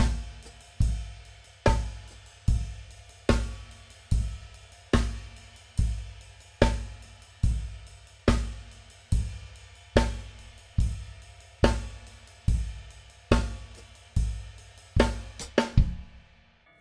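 Gretsch Brooklyn drum kit played as a steady groove at 72 beats per minute. The 22-inch bass drum plays four on the floor, the 1960s Gretsch Renown snare takes rim shots on two and four, and a Zildjian ride cymbal plays eighth notes with the downbeats accented. The groove ends near the end with a quick run of strokes.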